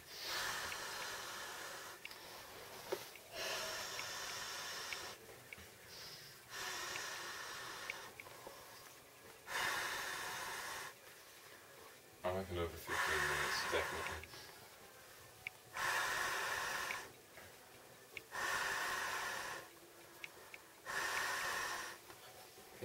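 Person blowing an Intex air bed up by mouth: about eight long, noisy breaths into the valve, each a second or so, evenly spaced every two and a half seconds, with quick inhalations in the gaps.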